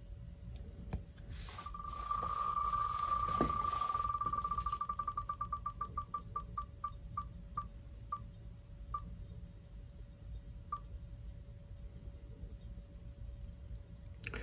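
Wheel of Names web spinner's tick sound effect on an iPad: rapid ticks that run together at first, then slow and spread out as the wheel loses speed, the last ticks nearly two seconds apart before it stops. A faint steady hum runs underneath.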